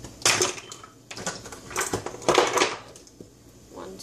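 Kitchen utensils clattering and rattling as someone rummages through them to find a measuring spoon, in several short bursts, loudest about half a second in and again around two seconds in.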